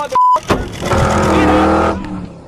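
A short, steady censor bleep cuts off a shouted word. About half a second in comes a sudden loud car-crash hit, which runs on as a loud, sustained noise with a steady hum in it.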